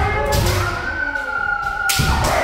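Kendo kiai: several long drawn-out shouts from practitioners overlapping, one held steady at a high pitch for over a second, with a sharp shinai strike or foot stamp near the end.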